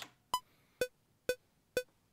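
Cubase metronome count-in before recording: four short beeps about half a second apart, the first higher-pitched as the accented downbeat of the bar.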